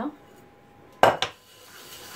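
A non-stick frying pan is set down upside down on the kitchen worktop, making a sharp clatter of two quick knocks about a second in.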